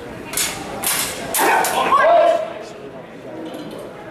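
Steel rapier and dagger blades clashing several times in quick succession during a fencing exchange, with sharp clinks in the first two seconds and a short voice shout about two seconds in.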